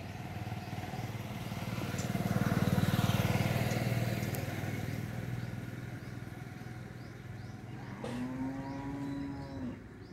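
A motor vehicle passes, its low engine hum swelling to a peak about three seconds in and then fading. Near the end comes one drawn-out low call, under two seconds long and sagging in pitch at the finish, like a cow mooing.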